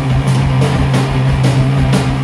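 Live heavy rock band playing, with a low guitar note held steady under drum and cymbal strokes about twice a second and no singing.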